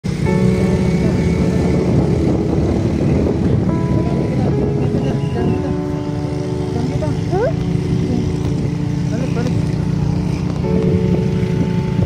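Motorcycle running steadily with a low rumble of engine and wind. Over it, held chord-like tones of background music change a few times.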